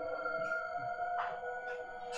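Soft background film music: a held drone of several steady tones.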